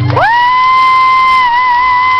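A final acoustic guitar chord stops just after the start. One loud, high whistle from the audience rises quickly, then holds a single steady pitch with a slight wobble, over crowd cheering.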